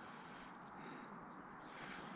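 Quiet background with a faint hiss and a thin, steady high-pitched whine, typical of the inverter's power electronics switching while the car charges.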